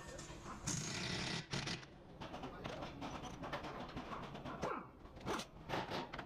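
Hand ratchet clicking in short runs as a socket on an extension turns the nut on a sway bar end link's ball stud, with scrapes and light metal knocks from the tool.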